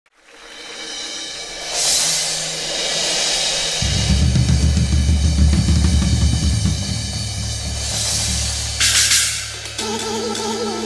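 Two drum kits played live: cymbals swell and ring about two seconds in, a deep rumble from the drums sets in about four seconds in, and a cymbal crash comes near nine seconds.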